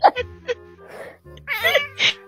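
A cat meowing once, a short arching cry about one and a half seconds in, over background music.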